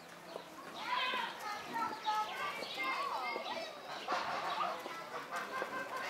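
Several children's voices chattering and calling at once, high and overlapping, with no clear words.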